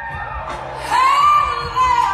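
Live blues band playing: after a quieter stretch, a long high note, bending slightly, comes in about a second in, and the music gets louder.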